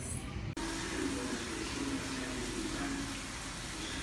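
Food frying in a pan on a gas stove: a steady sizzle that starts about half a second in.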